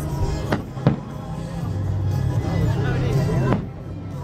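Aerial fireworks shells bursting in sharp bangs: two close together about half a second and a second in, the second the loudest, and a third near the end. Background music and people talking run underneath.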